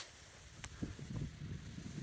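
Faint wind rumbling on the microphone, with a few faint ticks.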